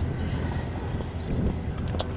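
Footsteps of high-heeled platform boots on asphalt: a few sharp clacks, spaced about two-thirds of a second apart, over a steady low rumble.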